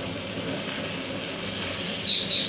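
Steady sizzle of okra, onion and tomato cooking in a pan, with a low steady hum underneath.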